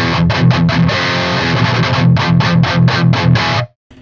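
Distorted electric guitar through a Peavey 6505 amp head into a Friedman 2x12 cabinet with Celestion Vintage 30 speakers, miked with an SM57: a riff of short, rapid chugs on the amp's own gain with no overdrive pedal engaged, a pretty tame sound for a 6505. The playing stops abruptly near the end.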